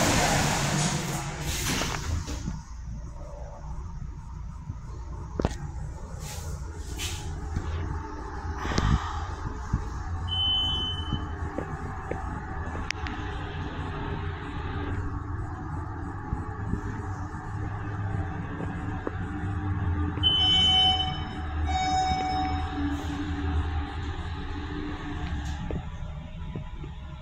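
Elevator ambience: a steady low hum, a short high electronic beep about ten seconds in, and a longer beep with several tones around twenty seconds in, typical of elevator arrival or door signals. A few scattered clicks and knocks fall between them.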